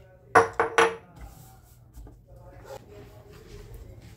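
A glass jar set down on a stone countertop with two sharp, ringing clinks close together, then softer knocks and clatter as a serving plate is laid on a wooden board.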